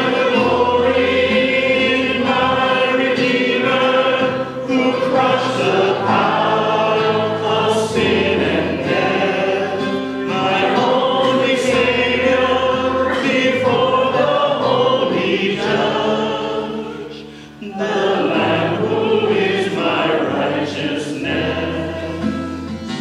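A church congregation singing a hymn together, accompanied by acoustic guitar with a low bass line. The singing breaks briefly between phrases about 17 seconds in.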